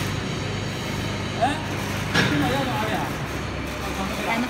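Steady low machine hum, with scattered background voices and a sharp click about two seconds in.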